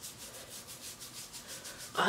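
Fingertips vigorously rubbing hair oil into the scalp through the hair: a faint scratching rub in a quick, even rhythm of strokes.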